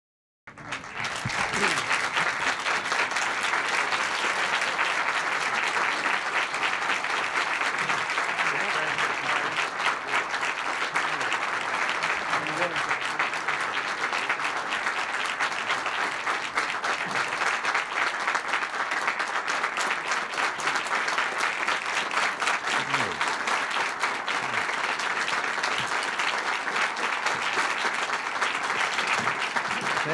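Audience applauding steadily, a dense patter of many hands clapping that starts abruptly about half a second in.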